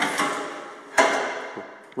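Two sharp knocks on the Kubota B26 tractor's sheet-metal hood, about a second apart, each ringing and dying away, as the hood is handled and opened.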